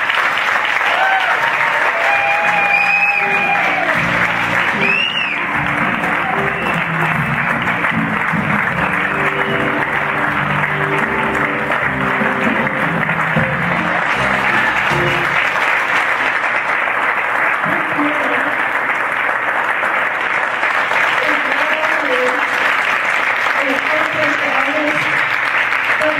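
Audience applauding and cheering throughout, with a couple of whistles in the first five seconds. A live band plays a walk-on tune under the applause and stops a little past halfway.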